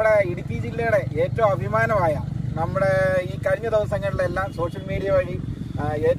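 A man talking over the steady, low, pulsing rumble of an idling engine.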